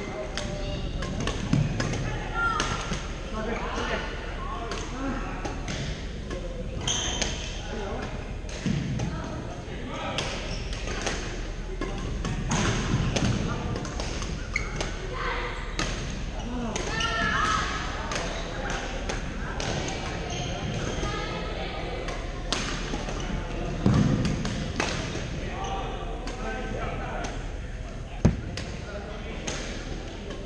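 Badminton rackets striking shuttlecocks again and again across several courts in a gym hall, with footfalls on the wooden floor and a few louder knocks, over the chatter of players' voices.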